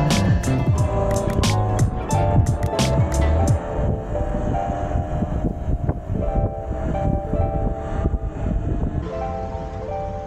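Background music with a steady beat over the ride footage; its high end drops away about three and a half seconds in while the melody carries on.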